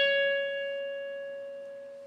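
A single note picked once on an electric guitar: the B string at the 14th fret (C#). It rings on and slowly fades.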